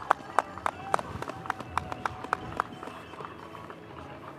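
Scattered sharp clicks, irregular at about three or four a second, growing fainter toward the end.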